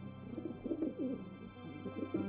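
Pigeons cooing in two bouts, the second starting near the end, over soft background music.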